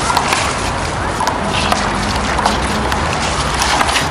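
A rubber handball slapped by hand and rebounding off a concrete wall and court during a rally: a few sharp, irregularly spaced smacks over steady outdoor background noise.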